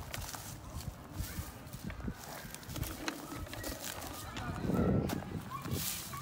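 Footsteps and scuffing on dry ground strewn with pine needles: a run of irregular crunches and clicks, with a louder muffled rumble about five seconds in.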